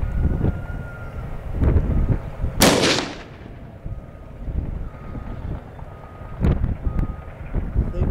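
.270 rifle firing a single 150-grain soft-point round: one loud, sharp shot about two and a half seconds in, with a short reverberating tail.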